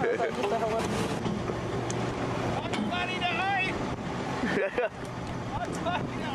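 Excited, unintelligible voices shouting and calling out, with sharp high swoops of pitch about halfway through, over a steady low motorboat engine hum and wind noise.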